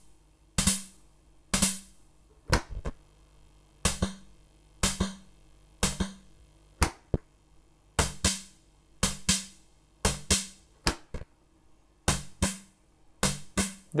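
Single hits from a Yamaha MR-10 analog drum machine played through an Ace Tone EC-20 tape echo, about one a second with quiet gaps between. Many hits are followed by a second, echo-like hit about a third of a second later.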